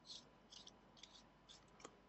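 Faint, short scratchy rasps of metal threads, repeating several times in a row as the stainless-steel top section of a Kayfun 3.1-clone tank atomizer is twisted on by hand.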